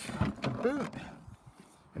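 Tailgate of a Renault Grand Scenic clicking as its latch releases, followed by a short rush of noise as the hatch lifts. A brief vocal sound comes partway through.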